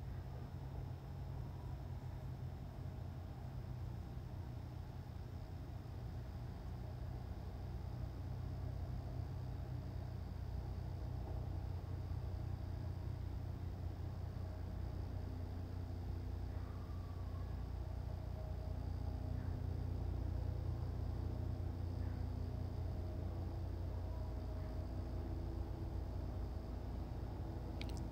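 Faint steady low hum of background noise. The slow pour of resin makes no distinct sound of its own.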